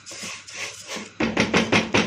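Vermicelli toasting in hot ghee in an enamel pot, stirred with a spatula: a sizzling hiss, then from about a second in, quick scraping strokes of the spatula against the pot, about four a second. The vermicelli is being browned golden before the rice goes in.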